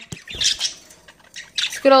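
Pet budgerigars giving short chirps in their cage, after a low bump of handling at the start.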